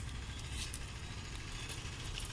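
Steady low outdoor rumble, with no distinct sound standing out.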